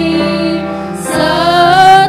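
Two women singing a worship song into microphones over musical accompaniment; a held note glides upward in the second half.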